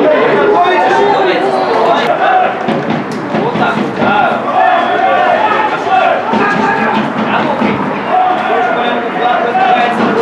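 Several voices shouting and calling over one another at a football match, some calls held for about a second, without a break.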